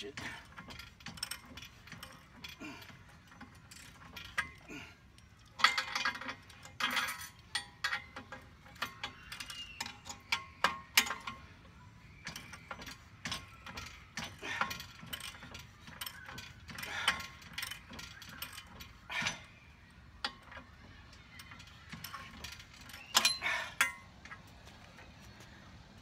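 Hand socket ratchet clicking in repeated bursts of quick strokes as it turns a bolt on a steel swing-arm hitch frame, with metal-on-metal clinks between runs. The bolt's lock nut holds against it, so the tightening goes in short back-and-forth strokes.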